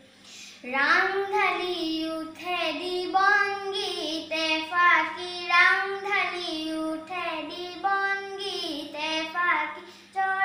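A nine-year-old boy singing unaccompanied into a microphone, holding long notes with sliding, ornamented bends in pitch; he starts a new phrase just under a second in.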